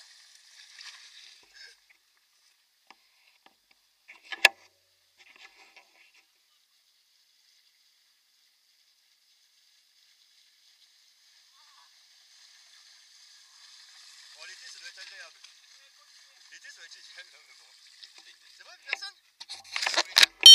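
Mountain bike tyres splashing through shallow floodwater. The hiss of spray from a rider passing close fades out in the first two seconds, and a single sharp knock comes about four seconds in. From about twelve seconds a second rider's splashing builds as the bike comes nearer through the water, loudest near the end.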